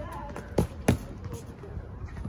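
Two sharp thuds of boxing gloves landing, about a third of a second apart, the second louder.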